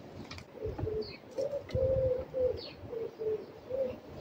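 A bird cooing: a run of about eight low, held coos, one longer in the middle, starting just under a second in. Faint high chirps from small birds and a few soft clicks sit behind it.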